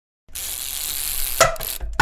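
Intro sound effect: after a moment of silence, about a second of loud hiss, then a short pitched sound and a low thump near the end.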